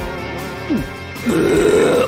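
A loud, rough burp starting about a second and a half in, over background music.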